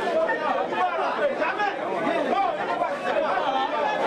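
A crowd of people all talking and arguing at once, many overlapping voices in a heated, unusual racket.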